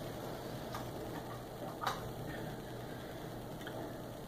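A few light clicks and taps from handling a stack of art prints while picking one up, over faint room tone; the clearest tap comes about two seconds in.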